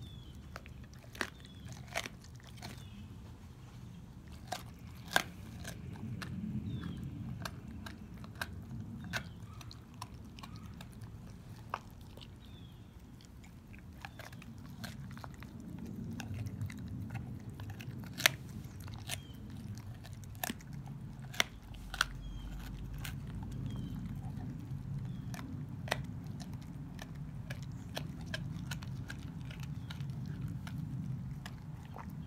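A dog chewing raw young beef ribs, the soft rib bones crunching in sharp, irregular cracks over steady low gnawing and chewing noise.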